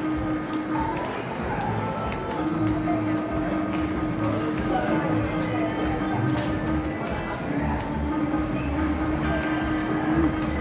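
Buffalo Ascension video slot machine playing its game music and galloping-hoofbeat stampede effects while the reels spin.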